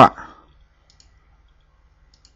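A few faint, soft clicks from someone working a computer, about a second in and again near the end.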